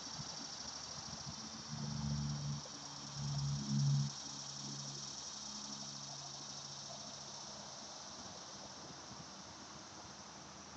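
Steady high-pitched chorus of insects in the trees throughout. A low, even drone joins it about two seconds in, is loudest for a couple of seconds, then fades away.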